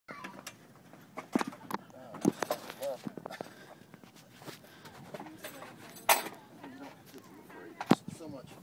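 Scattered sharp knocks and clicks from handling the cabin of a parked Piper Cub, the two loudest about six seconds in and near the end, with a few murmured words between them.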